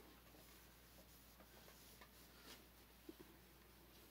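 Near silence: room tone with a few faint, small clicks and a soft scrape of handling.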